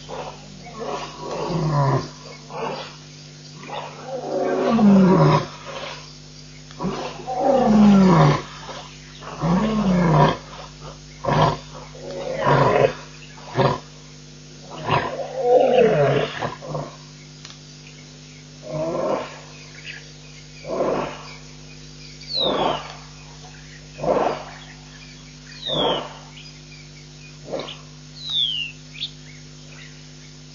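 Lion roaring: a bout of long, loud moaning roars that fall in pitch, then a trailing series of shorter grunts about one every second and a half, growing fainter. Small birds give short falling whistles near the end.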